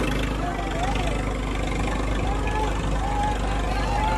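Diesel engines of a Swaraj 855 and a John Deere tractor running steadily under load as the two pull against each other on a chain, with the voices of a crowd calling out over them.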